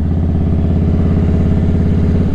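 Motorcycle engine idling steadily, with an even low pulsing beat.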